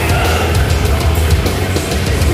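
Gothic metal band playing live: loud, heavy music with a pounding drum kit, going on without a break.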